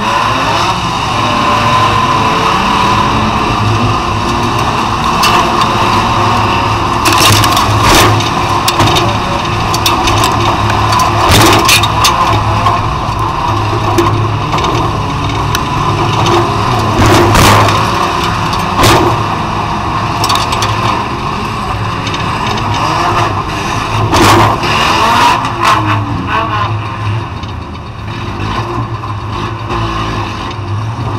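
Stripped-out banger race car's engine running and revving, heard from inside the bare cabin, with sharp bangs and knocks of car body metal several times.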